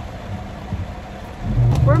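Steady low rumble of a car heard from inside the cabin, growing louder near the end as the car gets moving. A woman's voice comes in right at the end.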